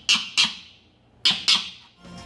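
Bush dog pup giving short, harsh shrieks with its mouth open, four calls in two quick pairs about a second apart.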